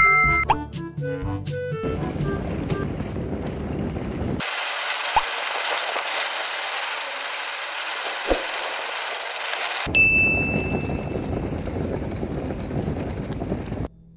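A bright notification-style chime rings at the start over background music. After about two seconds the music gives way to steady street noise, with a short high ping about ten seconds in.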